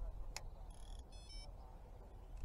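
A sharp click, then an electronic carp bite alarm sounding a short tone followed by two quick beeps of different pitch, as the river current pulls on the freshly cast line.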